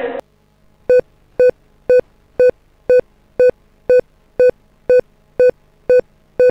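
Final Cut Pro's unrendered-playback beep: a short electronic beep repeating evenly twice a second from about a second in, the editor's signal that the sequence has not been rendered.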